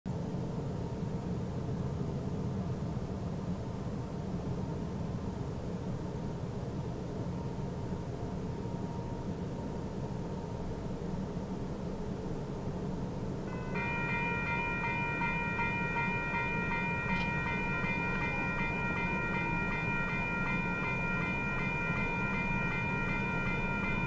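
Low, steady rumble of an approaching freight train. A little past halfway through, the railroad crossing's warning bell starts ringing steadily as the crossing signals activate.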